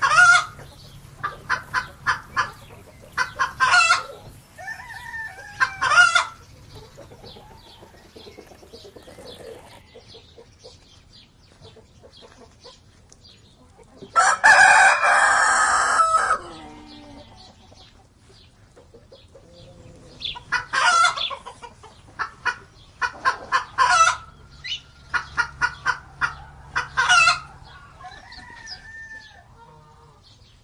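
Domestic hens clucking in runs of short, rapid clucks, and a rooster crowing once, a loud call about two and a half seconds long, midway through.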